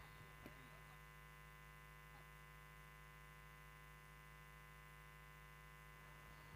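Near silence with a faint, steady electrical hum.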